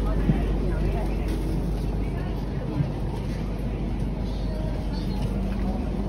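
Steady low rumble of a high-speed train carriage's interior while under way, with indistinct passenger chatter in the background and a couple of brief small knocks.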